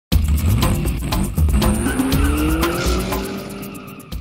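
Intro sound effects of a car engine revving and tires squealing over a heavy music beat. The engine pitch rises in the middle, and the mix fades toward the end.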